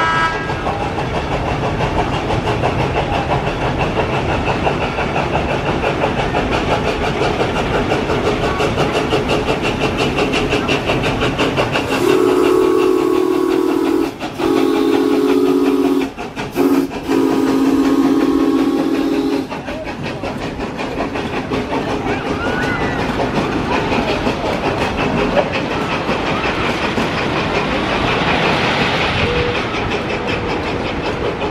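A train clattering steadily along its rails, with a chord-like whistle blown about halfway through in several blasts: two long ones, a short one, then a long one.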